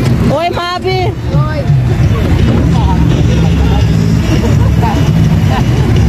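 Small caterpillar roller coaster train running along its track, a loud, steady low rumble. Short voices cry out at about half a second to one and a half seconds in.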